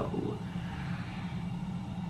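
A steady low rumble with a faint hiss over it: room noise.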